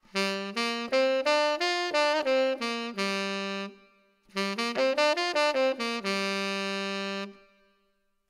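Tenor saxophone playing the A minor pentatonic scale (A, C, D, E, G) as a jazz example, in two short phrases. Each phrase runs quickly up and back down and ends on a long held low tonic.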